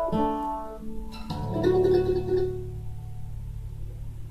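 Acoustic guitar and mandolin playing the closing chords of the song. A last chord is strummed about a second in and left to ring out and fade, leaving only a low hum.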